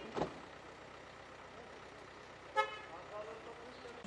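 Street traffic ambience with a brief car horn toot about two and a half seconds in, and a short thump just after the start.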